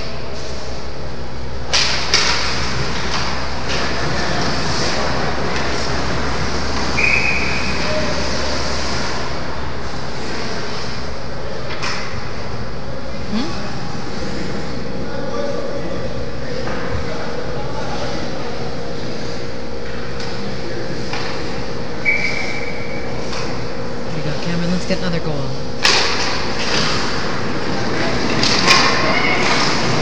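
Ice hockey game in an indoor rink: a steady hum of the arena with skates and sticks on the ice, a few sharp knocks of play against the boards, and faint voices of spectators.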